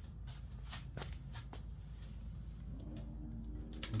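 A cricket chirping steadily in an even, high-pitched rhythm of about four chirps a second, with a few scattered clicks and a steady low hum underneath.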